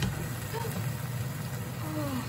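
Diced tomatoes sizzling in a hot pan of sautéed onions and garlic on a gas stove, over a steady low hum.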